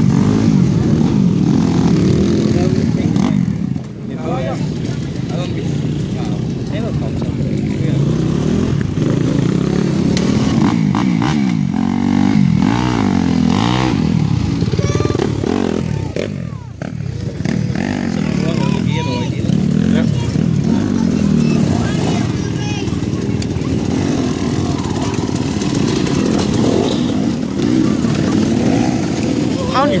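Off-road dirt bike engines revving up and down over and over as riders tackle the enduro-cross obstacles, the pitch climbing and falling with each burst of throttle. There are brief lulls about four seconds in and again around the middle.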